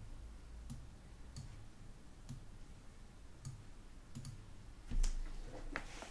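Faint, scattered clicks at a computer, coming irregularly about once a second over a steady low hum, with a louder soft knock about five seconds in.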